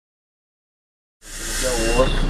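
Silence for about a second, then the sound fades in: the diesel engine of a Mercedes-Benz O-500M bus running steadily while standing still, heard from inside the cab, with people's voices over it.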